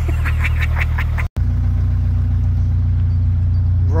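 Narrowboat's diesel engine running steadily at cruising speed, a low even drone, broken by a brief cut-out about a second in.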